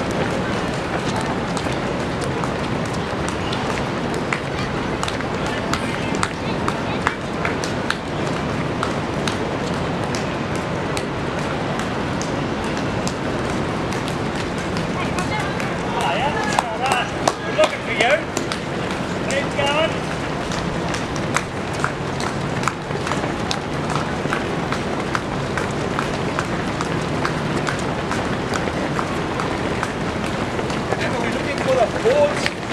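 Many marathon runners' footfalls slapping on the road as they pass in a steady stream, over a background of indistinct spectator chatter. Louder calls or cheers stand out briefly a little past the middle.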